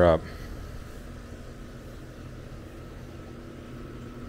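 Steady low machine hum with a faint steady tone above it, unchanging throughout.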